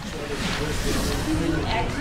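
Voices speaking over a steady hiss-like background noise.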